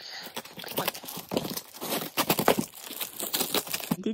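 A parcel being opened by hand: packing tape ripped off a cardboard box, with paper wrapping crinkling, in a continuous run of irregular rips and crackles.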